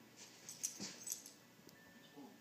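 A dog and cat play-fighting: a quick cluster of short, hissy scuffling bursts and a soft thud in the first half of the moment.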